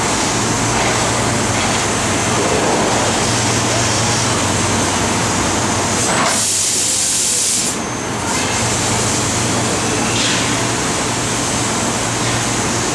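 TRUMPF laser cutting machine cutting metal: a steady machine hum and hiss, with a sharp high hiss about six seconds in that lasts a second and a half.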